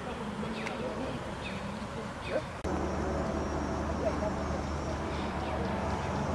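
Outdoor background sound with faint voices. About two and a half seconds in it changes abruptly to a steady low hum, like a running engine or motor.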